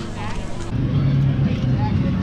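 Portable generator engine running steadily, a constant low hum that gets louder after a cut about two-thirds of a second in, with faint voices behind it.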